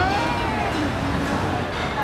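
Steady background noise of a busy restaurant dining room: a low murmur of distant voices and room noise, with no distinct event standing out.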